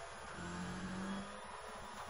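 Rally car's engine running hard with a steady note, heard from inside the cockpit, over the rumble of tyres on a gravel road.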